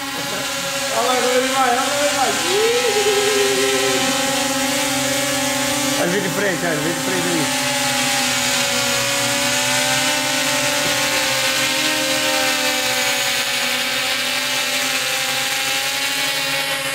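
A drone's propellers whining steadily in flight, several pitches together wavering slightly as it hovers while carrying a hanging sheet ghost prop. Brief voices and laughter come in about a second in and again around six seconds.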